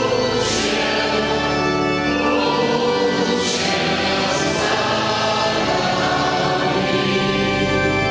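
A church hymn, voices singing together with pipe organ accompaniment, held steadily throughout.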